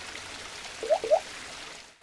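Animated-logo sound effect: a steady rushing, water-like noise with two quick rising blips about a second in, stopping abruptly at the end.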